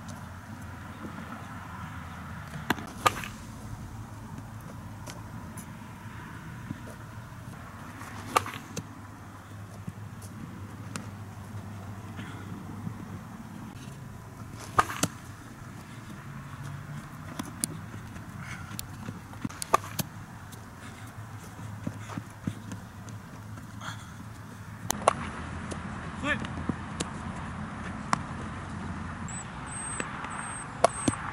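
Baseball infield practice: sharp cracks of balls being hit and popping into a leather glove, one every few seconds and sometimes in quick pairs, over a steady low hum.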